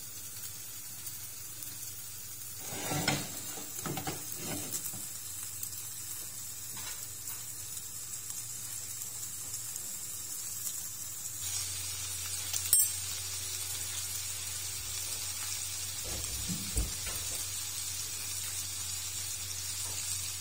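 Red mullet sizzling in a ridged grill pan over a gas flame, a steady hiss that grows louder about halfway through. A few soft knocks of the pan being handled, and a sharp click a little past the middle.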